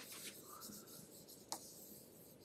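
Faint scratching of a stylus on a tablet screen as handwriting is erased, with a light tap about one and a half seconds in.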